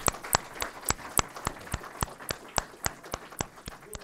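A small audience applauding, individual hand claps standing out. The applause dies down toward the end.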